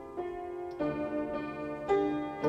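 Upright piano playing slow sustained chords, a new chord struck just after the start, again under a second in, and near the end.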